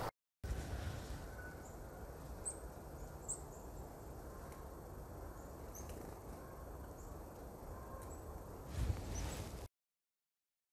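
Faint, quiet woodland ambience with scattered short, high, thin bird chirps. A brief low rumble comes near the end.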